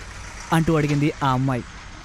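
A voice speaking one short phrase over a steady low rumble of road-traffic background.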